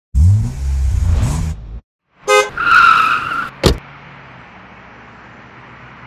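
Car sound effects: an engine revving for about a second and a half, then after a short gap a brief horn blast, a tyre squeal and a sharp knock, followed by faint hiss.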